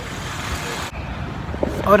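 Road traffic: steady noise of vehicles passing on the road, with a motor scooter going by close. The noise drops out briefly about a second in.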